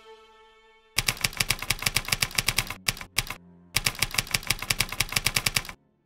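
A held string note fades out, then typewriter key clacks follow in rapid runs of about ten a second: one long run, two short bursts, a brief pause, then a second long run that stops abruptly near the end. The clacks are a typing sound effect for a title being spelled out on screen.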